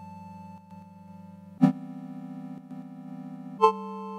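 Elektron Analog Four analog synthesizer playing sustained chords with a low, buzzy bass. A new chord comes in about every two seconds, each starting with a sharp, loud hit before settling into a held tone.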